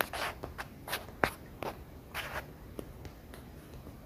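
Quiet room with scattered soft clicks and brief rustles, about eight in four seconds, the sharpest a little over a second in.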